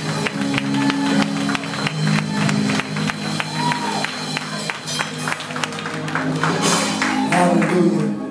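Live gospel praise music in a church: sustained keyboard chords under a steady beat of percussive hits.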